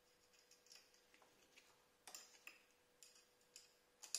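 Near silence broken by faint, irregular light metallic clicks, roughly two a second, as the bolt holding a dB killer is worked by hand inside a motorcycle exhaust silencer.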